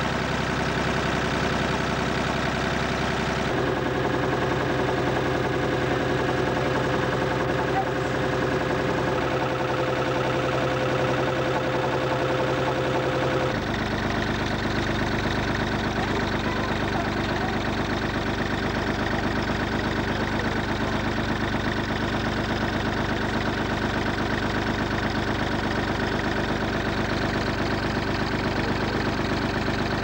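Engine of a small river passenger boat running steadily at low cruising speed, a continuous even drone with a fine regular beat. Its tone shifts abruptly about halfway through.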